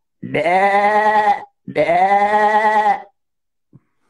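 A man imitating a goat's bleat with his voice: two long, wavering bleats with a short break between them.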